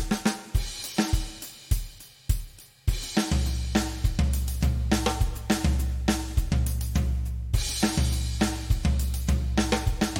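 Drum kit playing a beat of snare, hi-hat and cymbals, with a bass line coming in about three seconds in.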